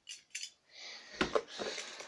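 A leather belt being handled while it is buckled, with light clinks from its metal buckle and rustling. The sharpest clicks come a little over a second in.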